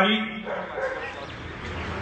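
A man's voice over a microphone finishes a recited line, then pauses, leaving a faint steady background hiss and murmur.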